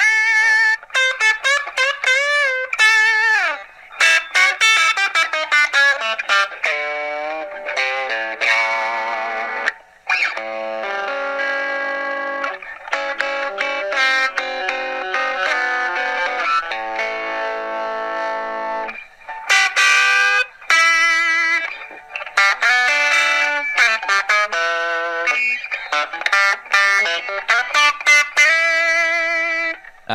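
Electric guitar playing a run of single-note lines with string bends and vibrato, lightly overdriven. It is played back through a phone and sounds thin, with no low end.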